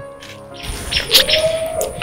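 Wet chewing and lip-smacking on a piece of roast chicken, with sharp clicks, starting about half a second in, over soft background music.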